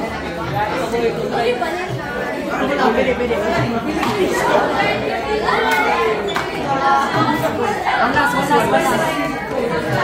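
Lively chatter of many students talking over each other in a classroom.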